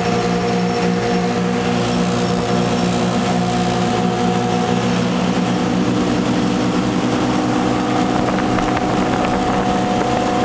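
Wellcraft 2900 cruiser's engine running steadily at cruising speed under way, a droning hum over a constant rush of wind and water. The engine note shifts slightly about halfway through.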